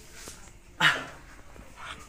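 A person's single short, sharp yelp of "Ah!" about a second in, otherwise quiet room tone.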